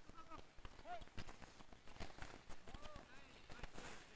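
Street hockey play on a hard court: a patter of sneaker footsteps and clacks of plastic sticks and ball, heard faintly, with a few short distant shouts from players.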